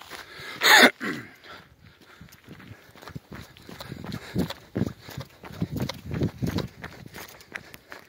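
A runner's heavy breathing, with a loud exhale about a second in, over footfalls on a paved path, about two to three a second.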